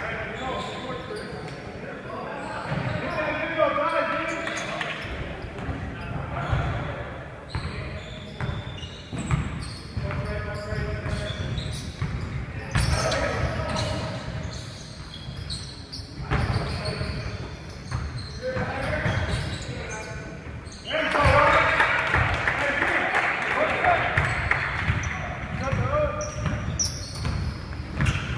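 A basketball bouncing on a hardwood gym floor as players dribble up the court, with players' voices calling out, in a large echoing gym. The sound gets louder and busier about three-quarters of the way through.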